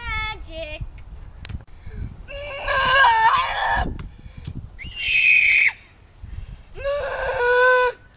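Children's voices making loud, wordless cries and shrieks: a short gliding call at the start, then three long drawn-out cries, the middle one high and shrill.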